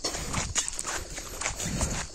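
Footsteps of a person walking on a paved road, a series of short hard steps.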